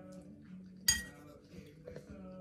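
A single sharp clink of a metal fork striking a ceramic bowl about a second in, ringing briefly.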